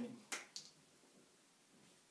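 Two sharp clicks about a quarter of a second apart from a whiteboard marker being handled, then near silence with faint room tone.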